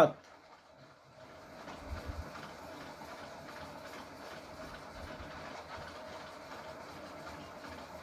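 Faint steady background noise with a thin, even hum, and a few soft low knocks about two seconds in.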